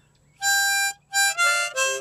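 Harmonica played in a short phrase of about four notes: one held high note, then a few quicker notes that step down to a lower note at the end.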